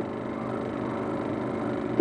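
A steady, even hum with a faint hiss, unchanging throughout, with no distinct events.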